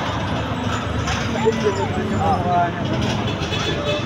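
Busy street-market background: a steady low rumble of traffic under people talking nearby.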